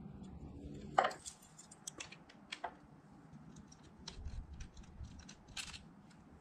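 Faint, scattered metallic clicks and clinks of hand tools being handled: a ratchet with a long T25 Torx bit and a just-removed bolt. The sharpest click comes about a second in.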